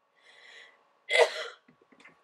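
A woman sneezes once: a faint intake of breath, then a sudden sharp burst just over a second in, followed by a few small clicks.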